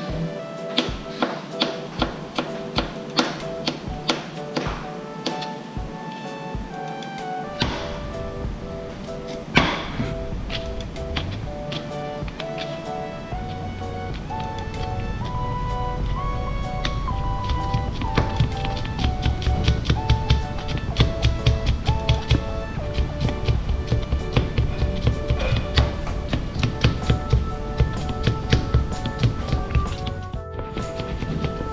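Chef's knife slicing white radish and then julienning carrot on a plastic cutting board: a steady run of sharp taps, about two to three a second, closer together and louder in the second half. Background music plays under the chopping.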